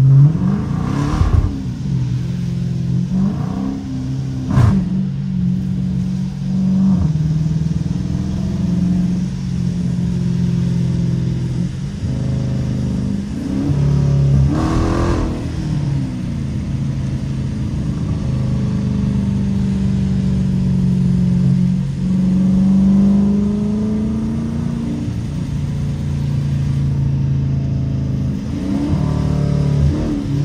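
Dodge Challenger R/T's 5.7-litre Hemi V8 heard from inside the cabin, pulling the car up from about 24 to 37 mph, its note dropping and rising again a few times and climbing once more near the end.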